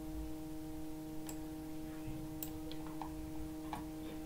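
Faint steady electrical hum with a handful of light, irregularly spaced clicks, typical of a computer mouse being clicked and scrolled.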